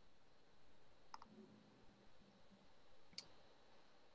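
Near silence on a video call, broken by two faint clicks: one about a second in, the other a little after three seconds.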